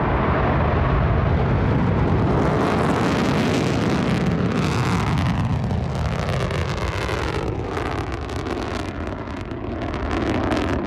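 Smart Dragon-1 (Jielong-1) solid-fuel rocket lifting off and climbing: a loud, steady rocket roar. From about five seconds in, a falling swoosh sweeps through it as the rocket climbs away, and it eases a little near the end.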